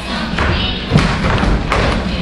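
A few dull thumps, the loudest about a second in, over quieter recorded dance music.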